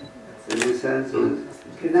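A man speaking through a microphone, with a short sharp click about half a second in.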